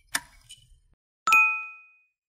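Subscribe-button animation sound effects: a sharp click, a fainter second click, then a single notification bell ding a little over a second in that rings with several clear tones and fades out.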